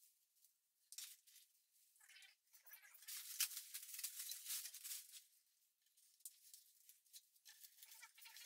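Faint rustling and crinkling of artificial plastic plants being handled and draped through a glass terrarium, with a hand rummaging in a plastic bag of fake leaves. The sound is loudest from about two to five seconds in.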